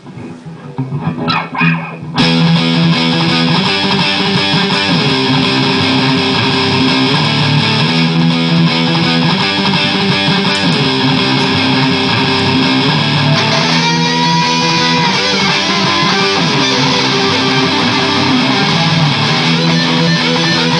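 Electric guitar, a 2003 PRS Custom 22 with Dragon II pickups, played through an amp: a few single picked notes, then about two seconds in it turns suddenly much louder into dense, sustained playing. Around two-thirds of the way through there are bent notes.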